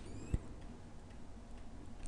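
Low room hum with a single soft click about a third of a second in.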